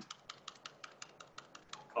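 MacBook Pro laptop keyboard keys tapped in a quick run of about a dozen clicks, roughly six a second, while working in a terminal.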